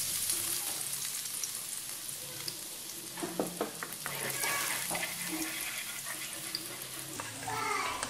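Minced garlic sizzling in hot cooking oil in a wok, stirred with a wooden spatula that scrapes the pan with a few short strokes about three to four seconds in.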